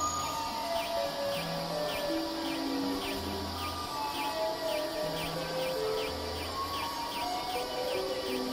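Experimental electronic synthesizer music: scattered held tones stepping between different pitches over a low bass note that sounds for about a second roughly every three seconds. Throughout, a quick train of short, high, downward-falling chirps runs at about three a second over a faint hiss, giving a bird-like or insect-like texture.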